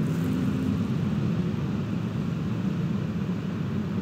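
Steady low rumble of ambient noise inside a concrete pedestrian tunnel, an even drone with no distinct events.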